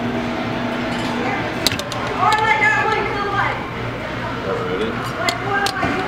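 Arcade claw machine in play: held electronic tones from the machine while the claw goes down onto a plush bear. A few sharp clicks and a constant low hum run under it.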